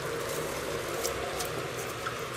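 Steady sizzling from the hot pot as rice is stirred into the jackfruit masala, over a low, even hum.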